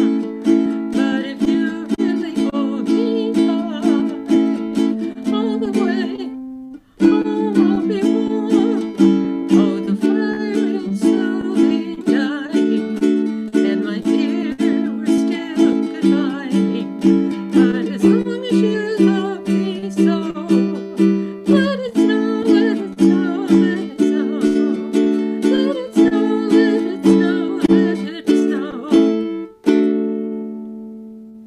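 A ukulele strummed steadily in chords, about two strokes a second, heard over a video call. It stops briefly about seven seconds in, then resumes, and a last chord is left ringing at the end.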